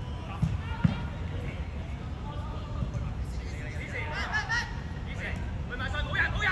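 Footballers shouting calls to each other across an outdoor pitch, over a steady low rumble. There are two short thumps in the first second.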